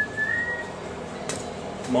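A person whistling a short held note that rises slightly, with a knock at the start and two sharp clicks later on.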